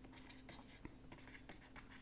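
Faint scratching and light tapping of a stylus writing on a pen tablet, in short strokes with a slightly louder stroke about half a second in.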